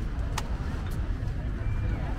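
Busy open-air street market ambience: a steady low rumble under the faint voices of passers-by, with a sharp click about half a second in.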